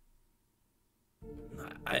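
Soft background music with held, sustained tones drops out, then comes back in a little over a second in. A man's voice breaks in briefly right at the end.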